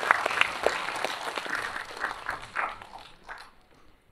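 Audience applauding, the clapping thinning out and fading away over about three and a half seconds until it stops near the end.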